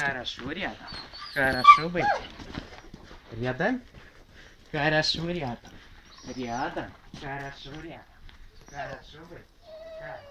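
Dogs making short scattered calls, some high and whining, others lower and bark-like, mixed with brief bits of a man's voice.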